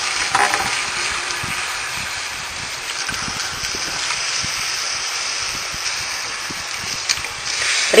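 Whole octopus sizzling in hot olive oil with anchovies: a steady frying hiss as the cold, wet octopus hits oil still hot from browning the garlic.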